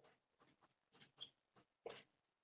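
Faint strokes of a marker pen writing on a whiteboard: a handful of short scratchy strokes.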